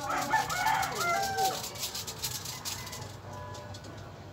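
A rooster crowing once, a single pitched call lasting about a second and a half at the start.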